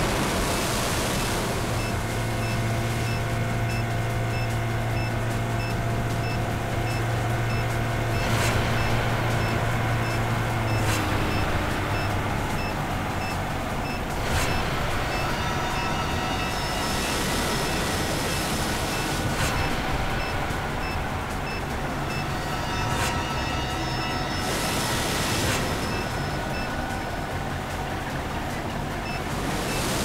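Tense background score with a low drone and repeated whooshing swells, and a steady high beeping about two to three times a second, over the steady rush of a speedboat's outboard engines and wake.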